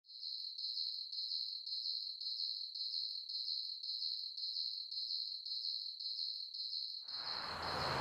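A cricket chirping in a steady rhythm, about two high chirps a second. About a second before the end it is joined by a wide hiss of outdoor ambient noise with a low traffic rumble.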